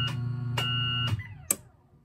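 Homemade ripple control transmitter sending a Decabit command: a steady electrical buzz with a high tone keyed on and off in half-second bits, stopping a little over a second in. About half a second later comes one sharp click as the receiver's relay switches off.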